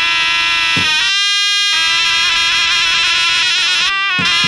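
Surle (zurna), a shrill double-reed shawm, playing held, wavering notes of a folk dance tune, with one deep lodra drum stroke just under a second in.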